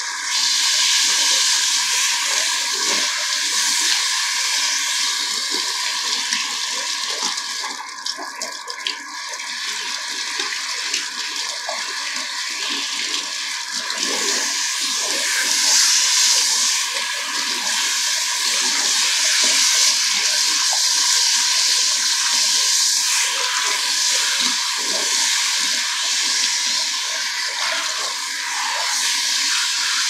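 Water from a salon shampoo-basin hand sprayer spraying steadily through wet hair and splashing into the basin, with a brief dip about eight seconds in.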